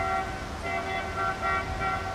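A vehicle horn sounding a string of short toots, about five in two seconds, over steady background rumble.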